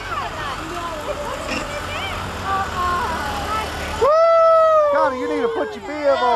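Outdoor parade noise: a steady low rumble from a passing truck towing a float, with scattered shouting voices. About four seconds in it cuts to a long drawn-out yell that falls slowly in pitch, followed by shorter shouts.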